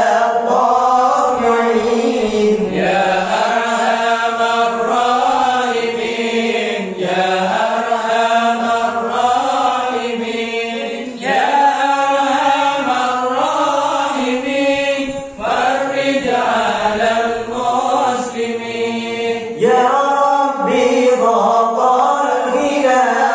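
A group of young men chanting Islamic dhikr together in Arabic, led by voices on microphones, in long melodic phrases of about four seconds each with short breaths between them.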